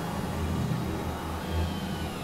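Experimental electronic noise-drone music: a low rumbling bass that swells and fades about twice a second, under a steady haze of hiss.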